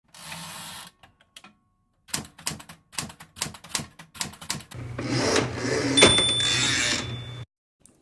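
Typewriter sound effect: a short hiss, then a quick run of about a dozen key strikes. A denser rattling stretch follows, with a sharp strike about six seconds in and a ringing tone after it that cuts off just before the end.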